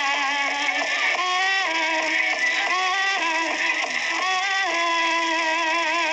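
Music with a singing voice holding long, slightly wavering notes that change pitch every second or so.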